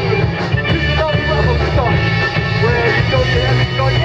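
Live garage rock band playing loud through a PA, with electric bass, electric guitar, organ and drums, heard from the crowd. The bass notes and the bending guitar and organ lines run on without a break.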